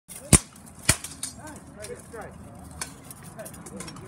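Two loud steel clashes about half a second apart as armoured fighters exchange blows with their weapons, followed by a few lighter knocks of steel.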